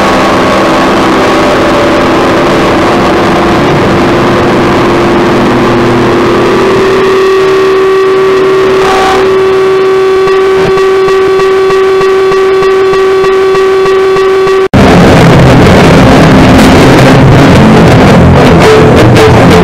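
Harsh noise music: a loud, distorted wall of noise carrying a steady held feedback-like tone with overtones. It cuts off abruptly almost fifteen seconds in and is replaced at once by an even denser, louder blast of distorted noise.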